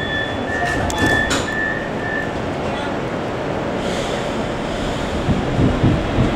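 Metro train door warning signal beeping, a high single tone about twice a second, stopping a little over two seconds in, over the steady rumble of a Metrovagonmash M3 metro car.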